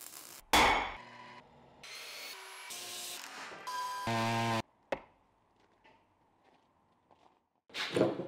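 Quick-cut montage of workshop sounds: a loud hit, then a run of brief tool and machine sounds, each cut off abruptly, the last a strong pitched motor-like note that stops dead. A sharp knock follows, then a few seconds of near silence.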